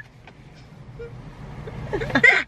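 Low, steady rumble of a car heard from inside its cabin, growing slightly louder towards the end.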